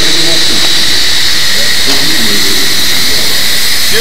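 A steady hiss with a high, even whine in it, under faint men's voices.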